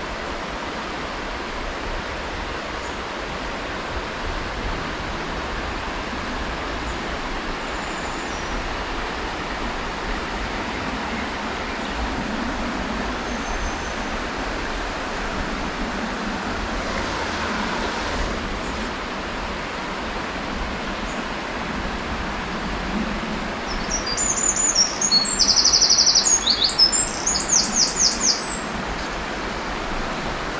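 Steady rush of flowing river water. Near the end a songbird sings a loud, fast, high-pitched trilling song lasting several seconds.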